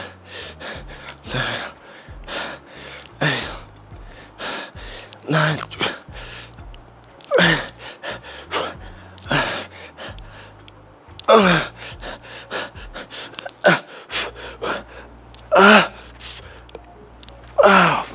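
A man's forceful, straining exhales and grunts during a set of seated dumbbell shoulder presses. There is one hard breath about every two seconds, in time with the reps, and several of them are voiced as groans. Faint bass from background music runs underneath.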